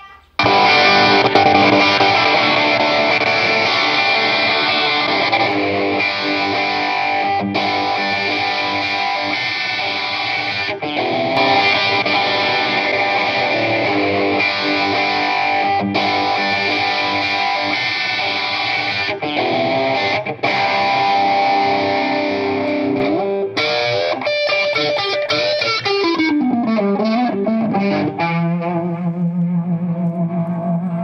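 Electric guitar with distortion through an amp, strumming sustained chords with short breaks between them. Near the end the notes slide up and down and then fall in pitch, settling on a held low note.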